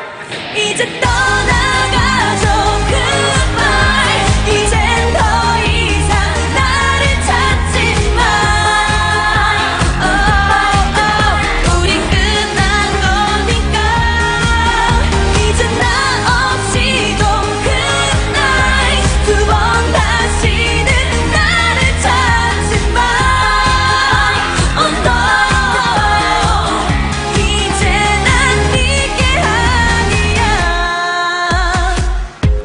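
Two female K-pop singers singing live into handheld microphones over a dance-pop backing track with a steady heavy beat. The beat drops out for about a second at the start, then comes back in.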